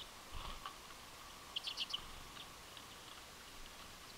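Common redpolls calling: scattered short high chips, with a quick run of four or five louder chips about a second and a half in. A soft low thump comes about half a second in.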